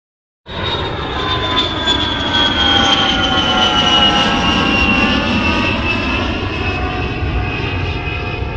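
Airplane engine noise: a steady rumble under a high whine that slowly falls in pitch, starting suddenly about half a second in.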